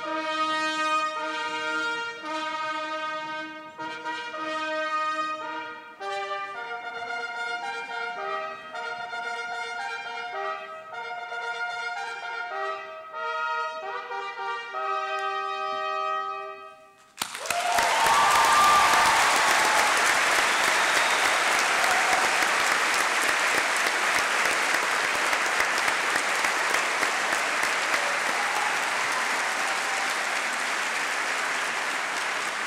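Brass ensemble playing slow held chords, the notes changing every second or so, stopping suddenly a little over halfway through. An audience then applauds steadily.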